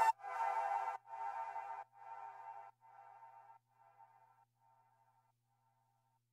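Background music ending: its last chord repeats as an echo about once a second, each repeat fainter, fading out over about five seconds.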